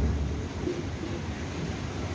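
Steady rain and wind, with a low rumble of wind buffeting the microphone.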